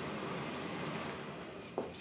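Rustling of a thin fabric dust bag being handled, with a brief soft knock near the end.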